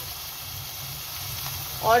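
Beef mince and spinach keema sizzling in a frying pan: a steady, even hiss with no breaks.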